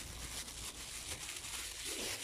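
Faint, irregular rustling of a bag being handled as it is pulled open.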